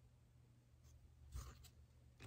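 Near silence, with one faint, brief rustle about a second and a half in, as a tarot card is set down on a wooden tabletop.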